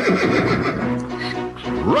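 A horse whinnying near the start, over background music that carries on through the rest.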